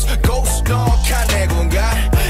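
Background pop music with a steady drum beat over a deep bass line.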